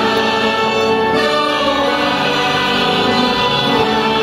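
A large choir singing in sustained chords, with instrumental accompaniment, recorded live from the audience.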